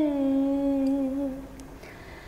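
A woman singing a Bengali folk song unaccompanied, holding one long note with a slight waver. The note fades away about one and a half seconds in.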